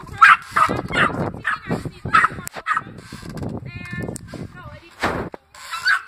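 A dog barking repeatedly in short, sharp barks, with a drawn-out yelping call about four seconds in.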